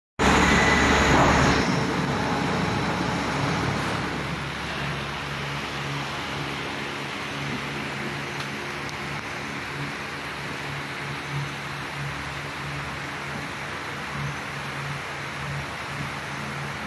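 A steady low machine hum with a few overtones that swells and fades slightly, opening with a loud rush of noise for about the first second and a half.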